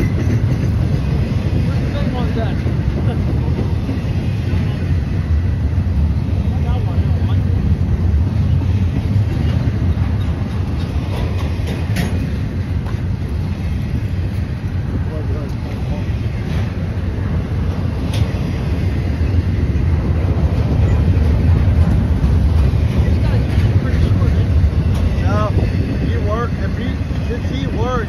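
Double-stack intermodal container cars of a Norfolk Southern freight train rolling past close by: a steady low rumble of wheels on rail, with a couple of sharp clicks partway through and a slight swell in loudness in the second half.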